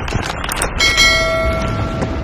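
Intro sound effects: a few quick clicks, then a bell-like notification chime struck about a second in, ringing with several overtones for about a second over a low rumble.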